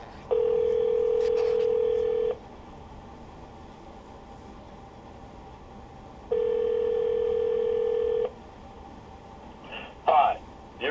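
Telephone ringback tone heard over the phone line: two rings, each a steady low tone about two seconds long, with about four seconds of silence between them.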